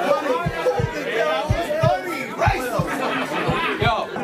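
Crowd of voices talking and calling out over one another, with a steady kick-drum beat thumping underneath.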